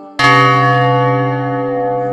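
A large bell struck once, about a fifth of a second in, its ringing tones slowly fading.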